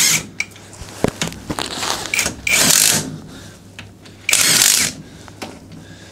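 GTM brushless cordless impact wrench hammering down the bolt nuts on an autoclave lid. It runs in two bursts of about half a second each, a couple of seconds apart, with light metal clinks between them as it moves from nut to nut.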